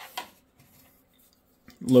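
A single brief, soft tap of small gear being handled on a wooden desk just after the start, then near silence: room tone.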